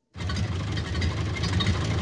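Early Model T-era automobile engine running with a steady, rapid chugging rattle, starting abruptly a moment in.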